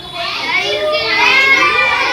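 A group of children's voices chattering and calling out at once, high-pitched and overlapping, growing louder shortly after the start.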